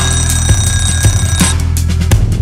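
An electronic timer alarm rings for about a second and a half over backing music with a drum beat, then cuts off. It signals the end of the exercise set.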